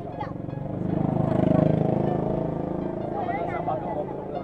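A motorbike engine running close by, growing louder to a peak about a second and a half in, then fading away.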